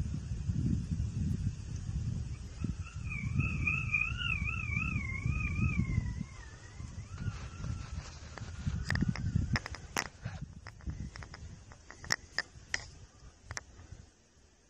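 Gusts of wind buffeting the microphone in a low, uneven rumble. For a few seconds a thin tone warbles up and down, and later come a series of sharp clicks.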